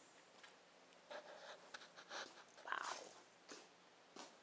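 Faint, scattered rustles and clicks from a handheld camera being moved about, with a few soft bursts in the middle of an otherwise near-silent stretch.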